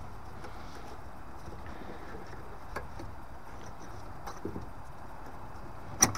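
Faint handling clicks over a steady low hiss, then one sharp click at the very end, as the return NTC sensor's clip is pushed back onto its pipe inside a Vaillant ecoTEC Pro boiler.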